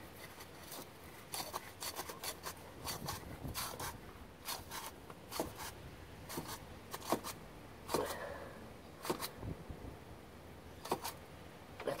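A spin-on oil filter being turned by hand and snugged onto its engine mount: irregular small clicks, rubs and scrapes of fingers and the metal can against the fittings.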